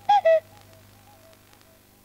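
A clear two-note falling call, one higher note then one lower, like a cuckoo, sounded once right at the start. It is followed by quieter echoing repeats of the same notes that fade out.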